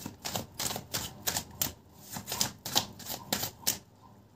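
A deck of tarot cards being shuffled by hand, a quick irregular run of about a dozen crisp card slaps and snaps, roughly three a second, stopping just before the end.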